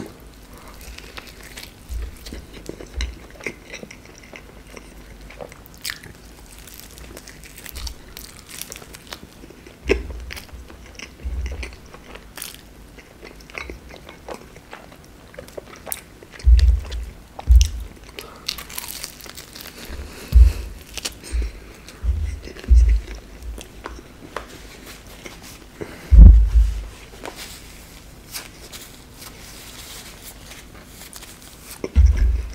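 Close-miked eating of a fried cheburek filled with red fish and cheese: bites and crunches of the crisp fried dough and wet chewing sounds. The loudest chews come in clusters in the second half.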